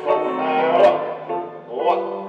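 Piano accompaniment for a ballet barre exercise, playing held chords, with a voice over the music. Two short taps sound about a second apart.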